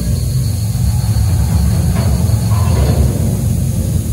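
Deep taiko drumming in a show soundtrack over loudspeakers: a loud, continuous low rumble with no distinct separate beats.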